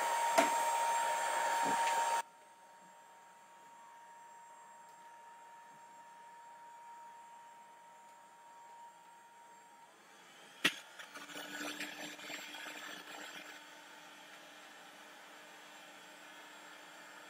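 Electric heat gun blowing air, its fan giving a steady whine. It is loud for about two seconds, then drops suddenly to a faint hum. A sharp click about ten and a half seconds in is followed by a lower steady hum.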